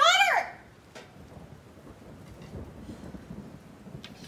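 A woman's short, high, drawn-out exclamation at the very start, then a faint low rumbling noise for the rest.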